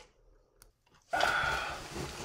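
A moment of near silence, then about a second in a loud rustling and scraping as the camera is grabbed and moved by hand.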